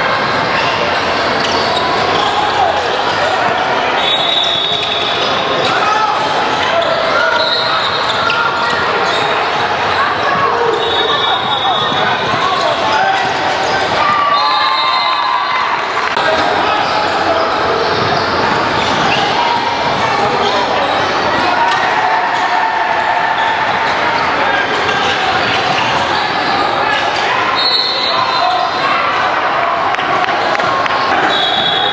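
Indoor basketball gym ambience in a large hall: many overlapping voices with no pause, a basketball bouncing on the hardwood floor, and brief high squeaks recurring every few seconds.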